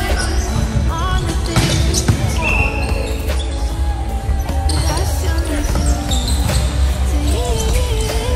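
Background music with a steady beat and a heavy, continuous bass under a melodic line.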